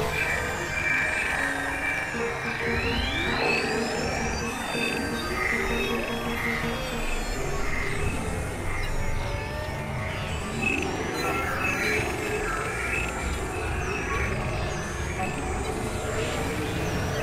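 Experimental electronic music made of several tracks layered at once: a dense, continuous mix of steady tones and drones, with a sweep rising in pitch about three seconds in and short high chirps through the second half.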